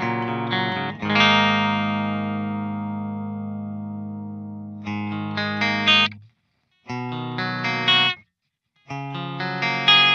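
Electric guitar tuned down a half step, played on its bridge humbucker through a clean EVH 5150 III amp profile on a Kemper Profiler, with the Railhammer Alnico Grande pickup first and then the DiMarzio Fred. It plays a rhythm part: one chord rings out and fades for a few seconds, then short chord phrases are cut off sharply twice, each time by a brief full stop.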